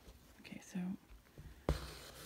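A soft, whispered or murmured voice about half a second in, then a single sharp click near the end.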